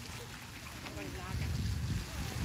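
Wind rumbling on the microphone in uneven gusts, with faint voices of people nearby.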